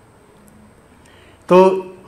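A pause with faint room tone, then a man's voice speaking into a microphone about one and a half seconds in.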